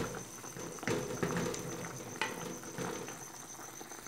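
Pot of pequi in thick broth at a rolling boil, bubbling with irregular soft pops and a few sharper clicks.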